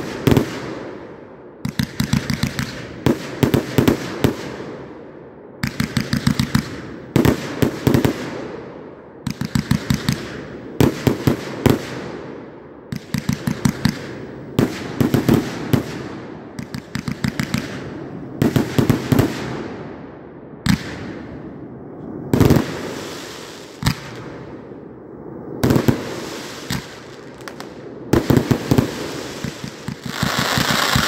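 A 309-shot consumer firework cake firing volley after volley of aerial shots. Each volley is a rapid string of several sharp bangs, followed by a fading hiss, and a new volley comes every second or two.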